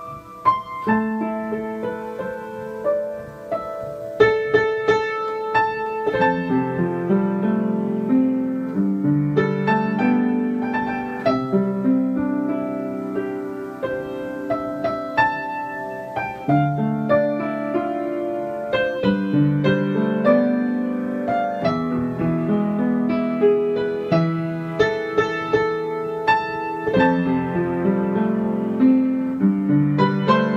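Background piano music: a continuous run of struck notes over held chords.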